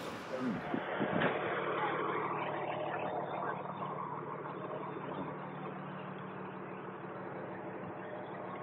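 Car engine running with a steady low hum, heard from inside the cabin as the car rolls past; a brief voice is heard in the first second.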